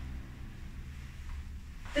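Low, steady room hum with no distinct sound on top of it.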